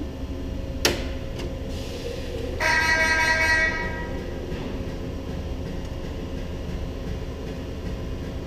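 A sharp click about a second in, as power is switched on to the drive, then a loud horn-like tone lasting about a second. Throughout there is a steady low machinery hum.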